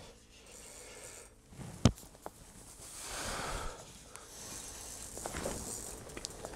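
Small spinning reel on an ice-fishing rod being cranked, its gears whirring and clicking unevenly as a hooked fish is reeled up through the hole, with a sharp click a little under two seconds in.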